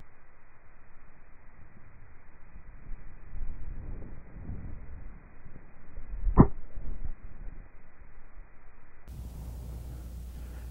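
A single short, sharp click about six and a half seconds in: a wedge with its face laid open striking a golf ball off a tight, closely mown lie on a flop shot, the club's sole skidding into the turf just behind the ball.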